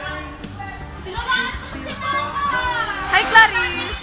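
Young people's voices chattering and calling out, with the loudest, high-pitched cry about three seconds in.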